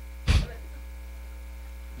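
Steady electrical mains hum, a low buzz with a ladder of overtones, carried through the microphone and sound system. About a third of a second in, one short burst of noise cuts through it.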